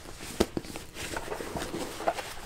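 Handling noise from a black zippered fabric bag being picked up: a sharp click about half a second in, then light rustling and small knocks.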